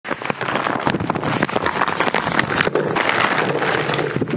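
Potatoes tumbling out of a cloth tote bag into a stainless-steel mixing bowl and onto a wooden counter: a dense run of irregular knocks and thuds with the bag rustling.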